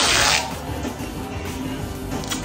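A strip of tape pulled fast off a roll: one short, loud ripping sound lasting under half a second, over background music.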